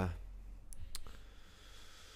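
Two sharp clicks about a third of a second apart, then a faint hiss.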